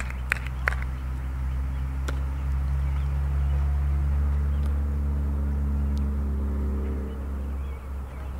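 A few sharp smacks in the first second, typical of a softball landing in a glove during throwing practice. Then a steady low engine-like rumble that swells through the middle and fades near the end.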